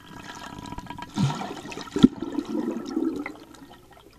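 Water gurgling and bubbling heard with the microphone underwater, swelling about a second in and fading after about three seconds, with a sharp knock about two seconds in.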